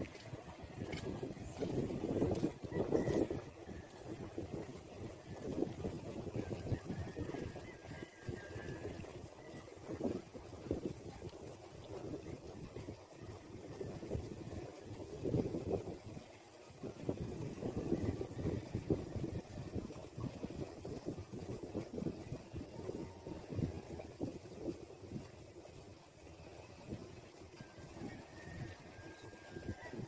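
Wind buffeting the microphone of a handheld phone camera: an uneven, gusting low rumble that swells and fades throughout.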